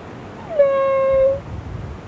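An infant's single drawn-out, even-pitched wail, starting about half a second in with a short drop in pitch and lasting just under a second.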